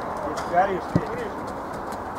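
Faint shouts of players across an outdoor football pitch, with a single sharp thud of a football being kicked about a second in.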